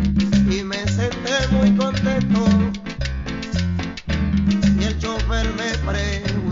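A recorded salsa song playing, with deep repeating bass notes under a wavering melody line.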